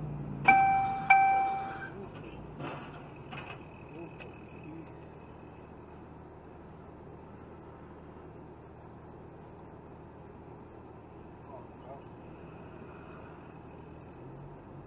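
Two electronic chimes about half a second apart, each a clear tone that fades over about a second, from an in-car alert device that also gives synthesized speed-limit warnings. After the chimes there is only quiet, steady in-car road noise.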